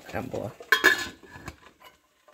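A stainless steel lid clanks down onto a pot with a brief metallic ring, a second clink following just after, about three-quarters of a second in.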